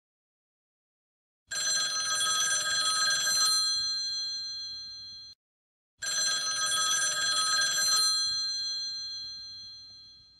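A bell ringing twice. Each ring is a fast metallic trill for about two seconds that then fades out; the first is cut off short, and the second begins about four and a half seconds after the first.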